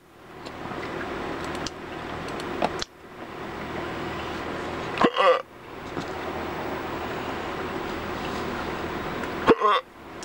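A man hiccuping after a spoonful of very hot chili sauce: two short, sharp hiccups, one about five seconds in and one near the end, over a steady background hum.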